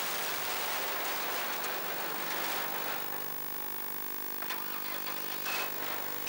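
Autograss Junior Special racing car's engine recorded by an onboard camera, buried under a rushing noise for the first half. About halfway through the noise eases and a steady engine note comes through, with a few sharp knocks near the end.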